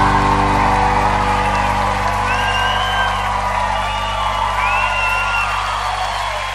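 A live band's final chord held and slowly fading, with accordion among the instruments, while a large audience cheers; twice a high whistle rises and falls above the cheering.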